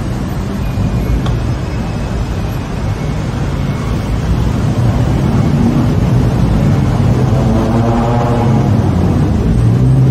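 Steady city road traffic rumble, with one passing vehicle's engine note standing out from about seven seconds in until near the end.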